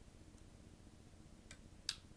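Two small sharp clicks about half a second apart near the end, the second louder, over faint room tone: the Sony a6300 mirrorless camera's power switch being flipped on.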